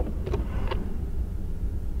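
Steady low rumble of a vehicle's engine and tyres heard inside the cab while driving slowly over a snow-covered road.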